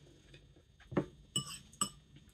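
Metal fork clinking against tableware three times, about a second in and twice more in quick succession, the last two with a short bright ring.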